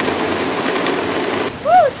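Heavy rain hissing steadily, cutting off abruptly about a second and a half in, followed near the end by a person's short 'Woo!' shout that rises and falls in pitch.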